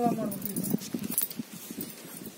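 A short bit of speech, then light clicks and jingly rustles of handling as a cord is pulled tight around a sheep's injured leg.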